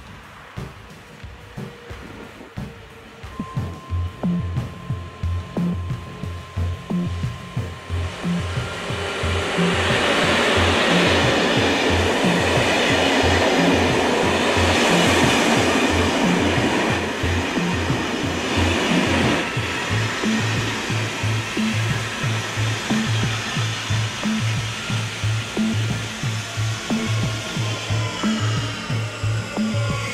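Background music with a steady beat about twice a second, over the noise of an electric-locomotive-hauled passenger train running past close by. The train noise swells from about eight seconds in, is loudest from about ten to nineteen seconds, then eases under the music.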